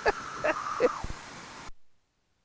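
A person's laughter trailing off over a faint steady hum, heard as if through a headset intercom; about three-quarters of the way in the sound cuts off abruptly to dead silence.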